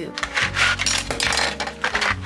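Product packaging being opened by hand: a cardboard box pulled apart and a plastic insert tray of Switch case parts slid out, giving a quick string of scrapes, clicks and rattles.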